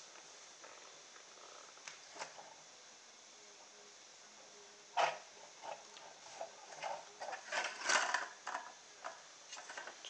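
Hands handling a small model car built on a DVD drive's metal case with CD wheels and stick axles while a rubber band is fitted round the back axle: a sharp click about halfway, then a run of light clicks, knocks and rustles, busiest near the end.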